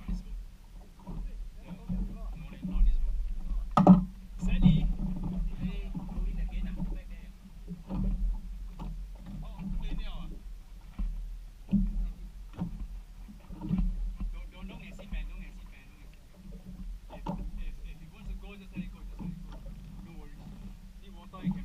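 Water slapping against a small boat's hull, with irregular knocks and a sharp knock about four seconds in, over a steady low rumble.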